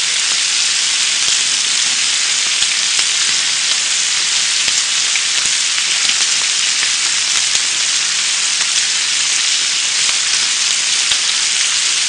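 Sliced smoked duck sizzling steadily on a hot grill plate, a dense, even crackle with faint tiny pops throughout.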